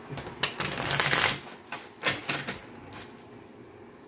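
A deck of tarot cards being shuffled by hand: a rapid flurry of card clicks lasting about a second, then two shorter bursts about halfway through.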